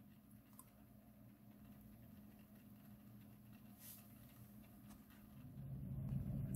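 Near silence: faint room tone with a low steady hum and a couple of faint ticks.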